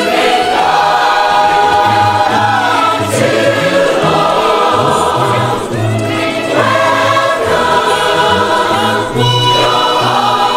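A large crowd of voices singing a song together in chorus, holding long notes.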